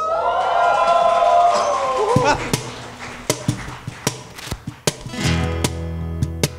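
A long, drawn-out vocal call, then a few seconds of scattered clicks and taps. About five seconds in, acoustic guitars and a bass guitar come in together with a sustained chord as the band starts a song.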